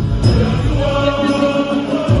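Cook Islands kapa rima action song: a group sings together in Cook Islands Māori, holding long notes, over a pulsing low accompaniment. The low beat drops away for the last half second or so.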